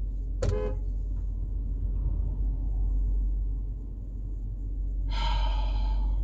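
Steady low rumble inside a vehicle's cabin. A short voice sounds about half a second in, and a held, even-pitched tone lasting under a second comes near the end.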